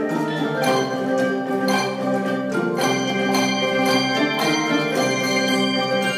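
Handbell choir ringing in full, many tuned handbells struck together in chords. The tones ring on between strikes, with fresh strikes about once a second.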